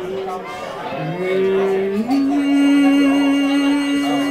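Male singer holding long wordless sung notes through a PA microphone: one note, a short break, then a new note that steps up about two seconds in and is held steadily.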